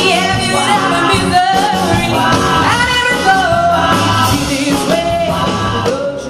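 A woman singing live into a handheld microphone over loud accompanying music, her voice sliding between long held notes.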